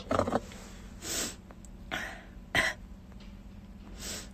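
A woman's short, breathy nose and throat noises, about four within a few seconds, over a faint steady low hum inside a car.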